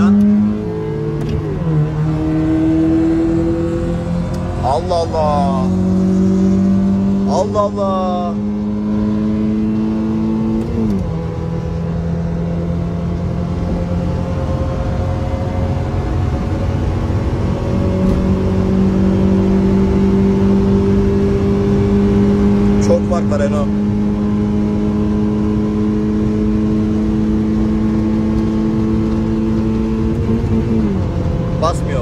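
A Honda car's engine, heard from inside the cabin, accelerating hard through the gears on the highway. Its pitch climbs slowly within each gear and drops suddenly at each upshift, once near the start and again about eleven seconds in.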